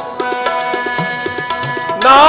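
Tabla playing a rhythmic pattern over held harmonium chords, an instrumental passage of Sikh kirtan. The bass drum's low strokes bend upward in pitch.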